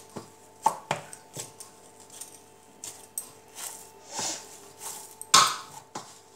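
Dough being kneaded by hand in a stainless-steel plate: irregular knocks and taps against the steel, then a few longer rubbing swishes, the loudest one just before the end.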